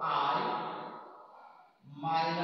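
A man's voice: a drawn-out, sigh-like utterance that fades away over about a second, then another begins near the end.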